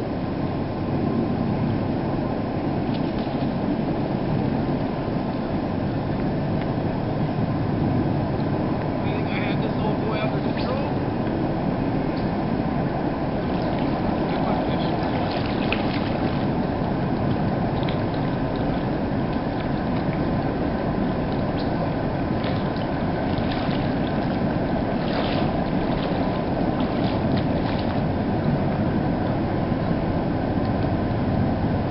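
Steady rushing noise throughout, with scattered brief splashes from a hooked steelhead thrashing at the surface.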